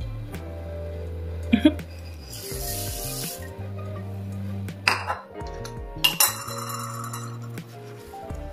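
Dry rolled oats poured from a dish into a glass mixing bowl: a short rushing patter about two and a half seconds in. Then a few sharp clinks of the dish and metal spoon against the glass bowl as stirring begins, over background music.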